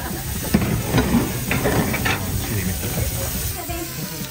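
Food sizzling as it fries on a hot cooking surface, a steady hiss, with a couple of sharp knocks in the first second or so and faint voices in the background.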